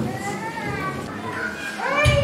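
A young child's high voice sounds in a large hall between the spoken introduction and the song. At the very end a choir starts to sing.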